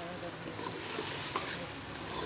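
Meat curry sizzling in an aluminium pressure cooker on a gas stove, with a metal spoon stirring it and now and then clicking against the pot.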